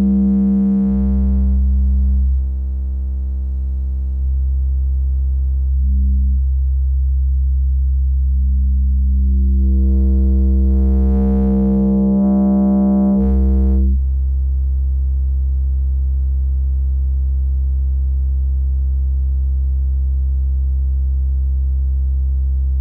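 Analog VCO of the kNoB technology η Carinae Eurorack module holding one low, steady pitch while its sine wave is wave-folded. The tone turns brighter and buzzier, thins, brightens again about halfway through, then settles into a plainer, smoother tone for the last several seconds.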